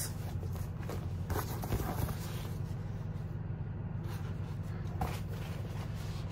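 Steady low hum with a few faint rustles and soft knocks of thick plastic gift bags being handled, about one and two seconds in and again near five seconds.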